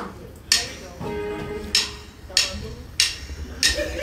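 Live band opening a song: a sparse intro of about five spaced percussion hits with a few held instrument notes between them, before the full band and vocals come in.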